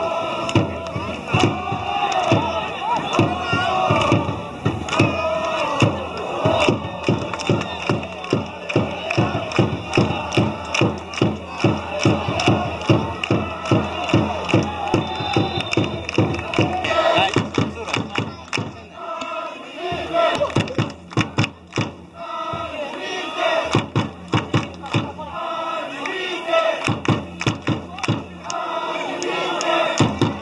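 Football supporters chanting in unison to a steady drumbeat of a few beats a second, the drumming pausing briefly a few times in the second half.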